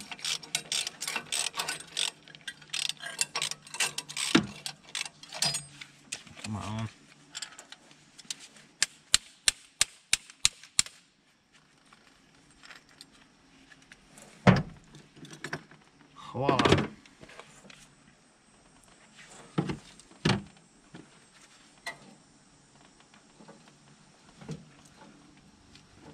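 Hand socket ratchet clicking rapidly as a bolt is worked loose on an engine's cylinder head. The clicks slow to separate strokes about three or four a second until about eleven seconds in. After that come only a few scattered metal knocks.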